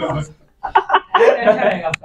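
A man chuckling in several short bursts, with a brief gap about half a second in.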